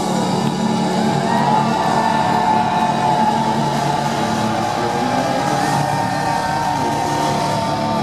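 Symphonic power metal band playing live at full volume, recorded from within the crowd. A sustained melodic lead line sits over dense guitars and drums.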